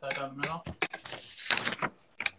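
Low, indistinct speech with several short clicks and knocks, typical of a loaf of bread and a knife being handled on a kitchen counter.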